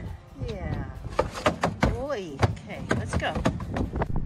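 Background music with a singing voice and sharp percussive hits.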